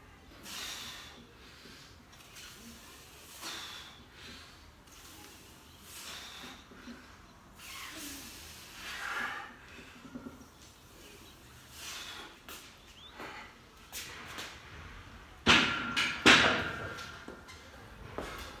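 Hard breaths roughly every two to three seconds through a set of loaded barbell back squats, then near the end two loud metal clanks, with a brief ring, as the 120 kg bar is set back into the steel power rack's hooks.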